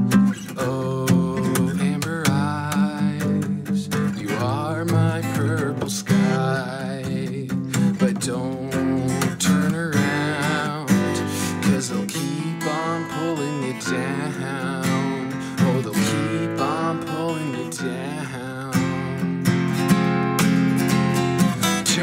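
Steel-string acoustic guitar strummed with a pick in a steady rhythmic chord pattern, played as an instrumental passage without sung words.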